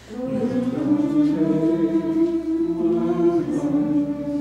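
A small group of voices singing a held chord, with handbells ringing along.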